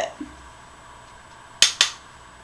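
Two short, sharp clicks about a fifth of a second apart near the end, against near-quiet room tone.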